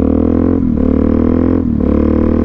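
Suzuki DR-Z400SM's single-cylinder four-stroke engine pulling under way. Its note breaks twice, about a second apart, as the rider shifts through the bike's short gearing.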